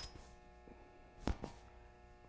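Clip-on lavalier microphone handled at the shirt collar, giving a short knock a little over a second in and a fainter one just after, over a steady low electrical hum.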